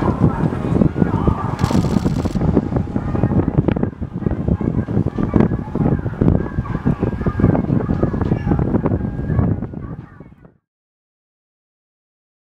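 Outdoor ambience with people's voices and irregular short knocks or buffets. It fades out about ten seconds in.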